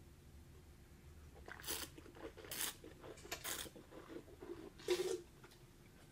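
Mouth noises of a wine taster slurping air through a mouthful of red wine and swishing it: several short hissing slurps, the loudest about five seconds in.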